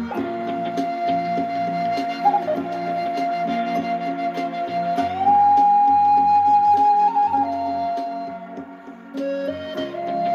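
Native American-style wooden flute in B flat, made of redwood, playing a slow melody of long held notes. A quick ornament comes about two seconds in, the line steps up to a higher held note about halfway, and it falls back and fades before a new phrase begins near the end. A low sustained accompaniment sits beneath.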